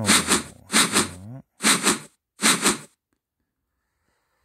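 A person laughing in four short, breathy bursts, the last about three seconds in.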